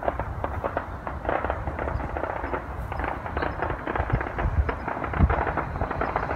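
Fireworks going off in a loud, rapid crackling barrage of many pops, with a few deeper booms about four and a half and five seconds in.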